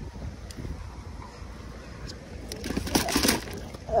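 Rustling and light clattering of gear in a plastic crate as a hand rummages through it, loudest for about a second past the middle, over a low wind rumble on the microphone.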